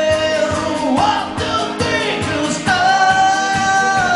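A man singing a song to his own strummed acoustic guitar, holding one long note from a little past halfway to the end.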